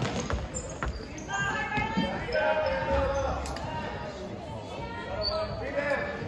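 Indoor basketball game: a ball bouncing on a hardwood court with a few sharp knocks, under the calls and shouts of players and spectators.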